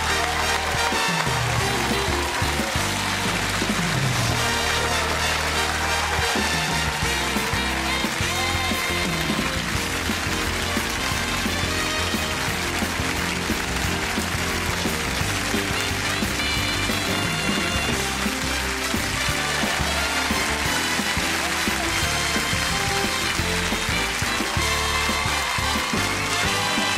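Studio audience applauding and cheering over loud music with a moving bass line.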